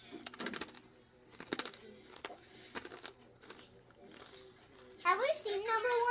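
Crunchy pretzel crisps being chewed: a handful of short, sharp crunches spread over the first few seconds. A child's voice starts about five seconds in.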